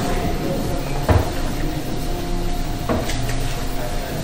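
A steady low hum with two short knocks, one about a second in and one near three seconds.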